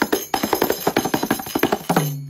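Kanjira, the South Indian lizard-skin frame tambourine with jingles, played by hand in a fast run of finger strokes, about eight a second, jingles rattling with each stroke. The last stroke at the end leaves the drum head ringing low.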